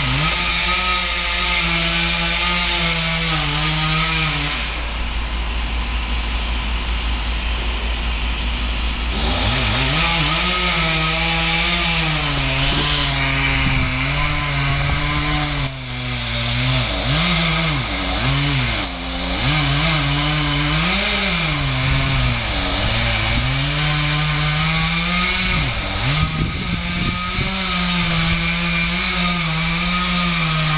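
Chainsaw cutting through a tree trunk during felling, its engine pitch rising and dipping again and again as it loads up in the cut. It eases off for a few seconds about five seconds in, then revs back up and keeps sawing.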